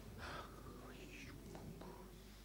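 Faint whispered speech, with soft hissy syllables for most of the moment, over a steady low hum.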